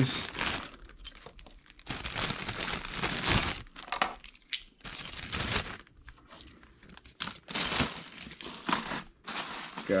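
Plastic zip-lock bag full of coins crinkling as it is handled, with the coins and other small metal finds clinking together in irregular bursts.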